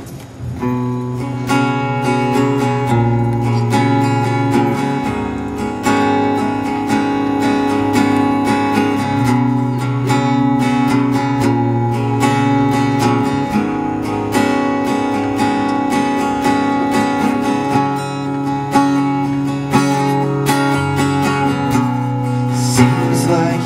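Strummed acoustic guitar playing a song's instrumental intro, with low bass notes underneath. It starts about half a second in.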